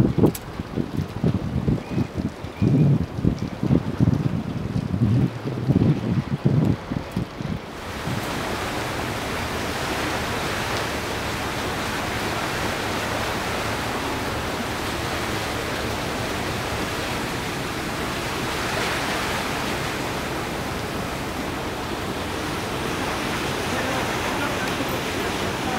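Wind buffeting the microphone in irregular low gusts for the first eight seconds. Then comes a steady, even rush of wind and sea.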